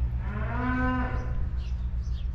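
A cow mooing once, a single call of about a second and a half whose pitch rises slightly and then falls. A steady low rumble runs underneath, and a bird chirps near the end.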